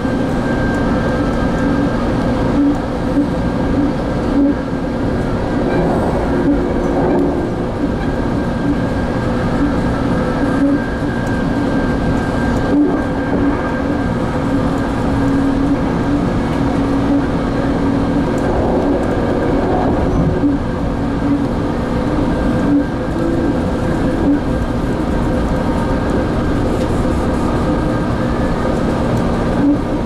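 Inside a moving Metrolink commuter rail passenger car: steady running noise of the train at speed, with a constant hum and a few clicks from the wheels over the track.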